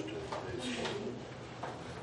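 A pause in speech: meeting-room tone with a steady low hum and a few faint, brief sounds.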